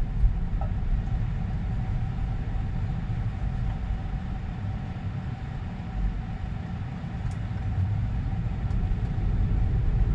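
Road and tyre noise heard inside the cabin of a Tesla Model 3 electric car driving at low speed, a steady low rumble that eases off mid-way and grows louder again near the end as the car picks up speed.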